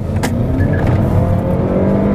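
Chevrolet Malibu's 2.0-litre turbo four-cylinder engine, heard from inside the cabin, pulling under full throttle with the revs climbing steadily.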